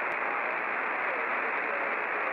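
CB radio receiving on channel 38 lower sideband: a steady rush of static from the speaker, with faint traces of a weak distant station's voice in it.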